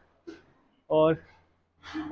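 A man speaking in Hindi: a short breath, then a single word about a second in, with talk starting again near the end.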